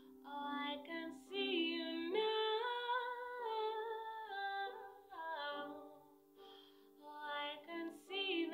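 A woman singing solo in phrases with long held notes, over a soft sustained chord accompaniment, with a short pause between phrases near the end.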